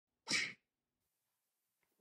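A single short, sharp breathy burst of a person's voice, about a quarter of a second long, a few tenths of a second in.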